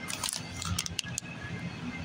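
Light crackling and a few small clicks from a plastic popcorn bag being handled, over a low steady background hum.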